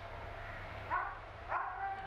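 A dog barking faintly twice, about a second in and again near the end, over a low steady hum.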